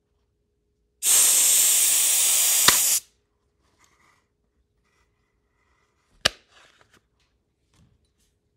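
Compressed air from an air compressor's blow gun, a loud steady hiss for about two seconds, blowing at a capped plastic baby bottle, with a click near its end. A single sharp knock follows a few seconds later.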